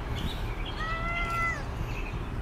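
Domestic cat meowing once, a single call just under a second long that dips slightly in pitch at its end.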